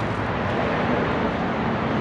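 Steady rushing background noise with a faint low hum underneath, unchanging through the moment.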